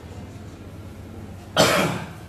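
A person coughing once, loud and close, near the end.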